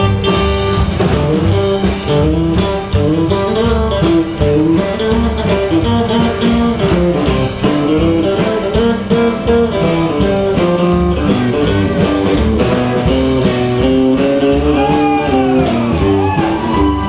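Live rockabilly band playing an instrumental passage: drum kit, upright bass and strummed acoustic guitar under a picked guitar lead melody.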